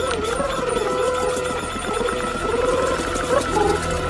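Film soundtrack with a wavering melody line that shakes with heavy vibrato, then holds a note, over steady held tones, and a light, continuous rattle of small jingles.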